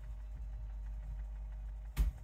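Low, steady hum of a motorized rotating display stand turning a figure, with a single sharp click at the very end.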